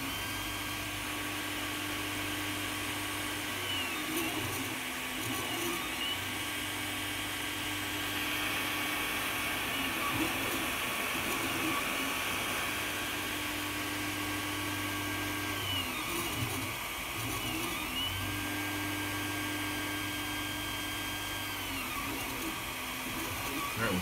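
Creality Ender 3 Pro 3D printer running a print: its stepper motors hum in steady tones for several seconds at a time as the print head traces long passes, with brief pitch glides where each pass ends and turns. The hotend fan's steady hiss sits underneath.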